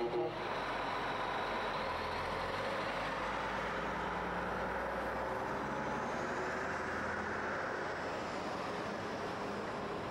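Heavy truck engine running steadily with road noise, as a truck pulls out into traffic.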